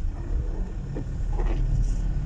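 Steady low rumble of a car driving on a wet road, heard from inside the cabin.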